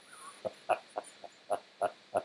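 A man chuckling quietly: a run of short laughing breaths, about three a second.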